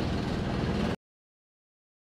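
Homemade magnetic induction heater running: a half-horsepower electric motor spinning a magnet disc beneath copper bars, with an inline duct fan blowing air through, giving a steady hum and whoosh. It cuts off abruptly about a second in.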